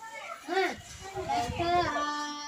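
Children's voices calling and talking, high-pitched and rising and falling.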